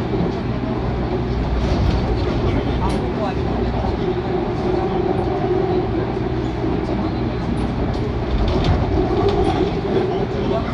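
Interior of a moving subway train crossing a bridge: a steady running rumble of wheels on rail, with scattered light clicks.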